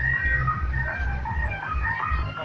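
Street procession music: a low, even drum beat about three times a second under high held notes that step from pitch to pitch.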